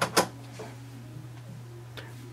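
A plastic HP 65XL tri-color ink cartridge clicking twice against the printer's carriage as it is set into its slot, over a low steady hum.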